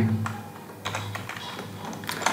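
Computer keyboard keys clicking: a quick run of light keystrokes starting about a second in.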